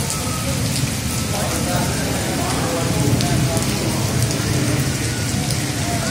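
Steady rain falling, with the low, even rumble of a passenger train rolling past on the track.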